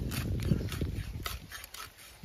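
Fish being cut on a boti, an upright blade fixed in a wooden block: a few irregular knocks and scrapes as the body is pressed through the blade, over a low rumble that fades toward the end.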